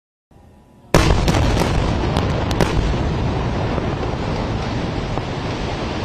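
A large explosion: a sudden blast about a second in, followed by a long, slowly fading rumble with a few sharp cracks in its first couple of seconds.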